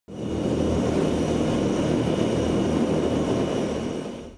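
Tupolev Tu-142's four Kuznetsov NK-12 turboprop engines running with their contra-rotating propellers turning: a loud steady drone with a thin, steady high whine over it.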